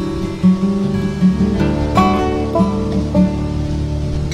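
Background music: acoustic guitar being picked and strummed, with a steady run of plucked notes.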